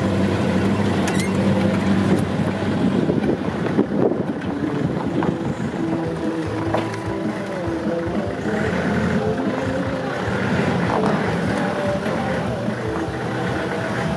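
Truck engine running, with a steady low hum whose pitch shifts a few times, and scattered knocks and rattles.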